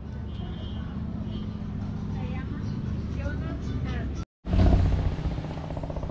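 Outdoor street ambience: a steady low rumble with faint voices in the background. About four seconds in there is a brief gap of silence, and after it a louder low rumble comes in.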